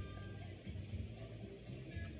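Quiet music with a bass line that repeats about twice a second.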